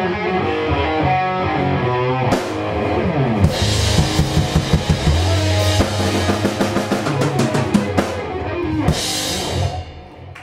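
Live rock band (electric guitars, bass and drum kit) playing an instrumental passage, with a cymbal crash a few seconds in and a run of rapid drum hits in the second half. A final cymbal crash near the end brings the song to a close.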